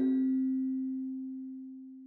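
Last note of the end-credits music: a single low, bell-like tone, with a few fainter higher tones dying out quickly, ringing on and fading away steadily.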